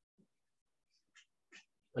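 Near quiet, with a few faint, short breaths. A man's voice begins speaking right at the end.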